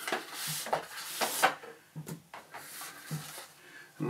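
Cardboard box sleeve sliding off a polystyrene tray, a dry rubbing scrape over the first second or so, followed by several light knocks and taps as the packaging is handled.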